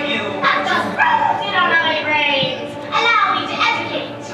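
Stage actors' voices, loud and high-pitched, delivering lines in a large hall.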